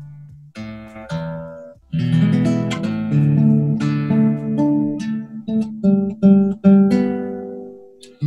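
Nylon-string classical guitar being tuned: a few single strings plucked and left to ring, then strummed chords from about two seconds in with separate plucked notes between them. The strings are freshly changed, which the player expects leaves it a little out of tune.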